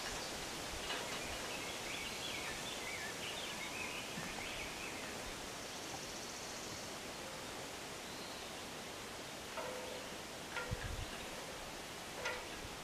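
Steady outdoor hiss of a breeze and rustling leaves, with a small bird singing short, wavering high phrases during the first few seconds. A few brief lower-pitched calls and a soft low thump come near the end.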